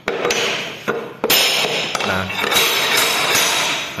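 Hammer blows on an L-shaped steel pull bar hooked over the end of an MDF click-vinyl floor plank, a run of sharp metallic knocks that drive the plank along to close a one-millimetre gap at its joint.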